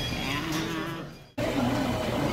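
Fast-food restaurant room noise with a low held tone that fades out just over a second in, followed by a brief gap and a sudden return of the room noise.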